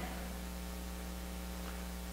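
Steady electrical mains hum, a low, even buzz with a ladder of higher overtones, unchanging throughout.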